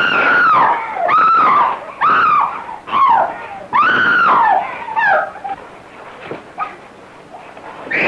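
A run of about six high, wailing cries, each rising and then falling in pitch over about half a second, coming roughly once a second and then dying away after about five seconds.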